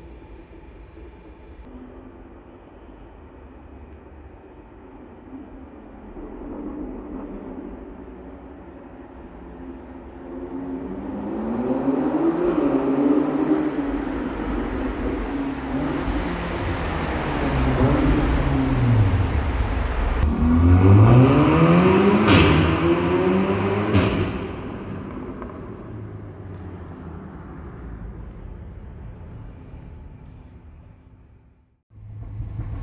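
Tuned Audi S3's turbocharged 2.0 TFSI four-cylinder through a Milltek non-resonated exhaust, accelerating hard past in a tunnel. The note rises and dips several times through gear changes, with two sharp cracks from the exhaust near its loudest. It then fades away, with heavy tunnel echo throughout.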